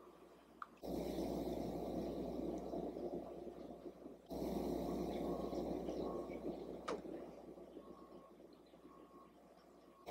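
Faint steady background noise that starts and stops abruptly, as at edits, and fades out near the end, with a single small click about seven seconds in.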